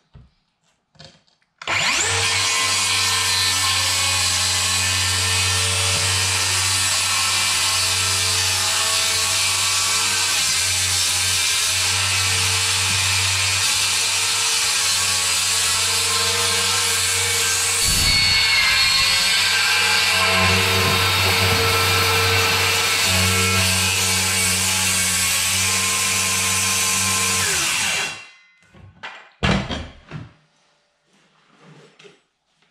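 DeWalt FlexVolt 60V cordless circular saw cutting across pine subfloor boards. It spins up about two seconds in, cuts steadily for close to half a minute, running a little louder in the second half, then spins down near the end.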